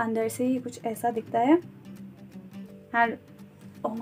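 Soft background music with held notes, under a woman speaking in short phrases, with a pause in her speech in the middle.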